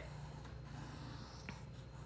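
Faint scratchy rubbing of chalk pastel on paper as the line is thickened, with one small tick about one and a half seconds in.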